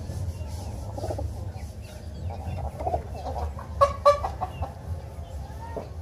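Short clucking bird calls, the two sharpest coming close together about four seconds in, over a steady low rumble.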